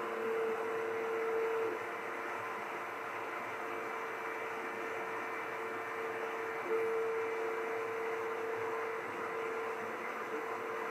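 Monport Onyx 55 W CO2 laser cutter running a cut: a steady machine hum and hiss with a whining tone that is louder near the start and again from about seven seconds in.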